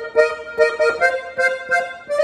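Piano accordion played on its right-hand keys: a run of short, separate melody notes, about four a second, with the instrument's bright reedy tone.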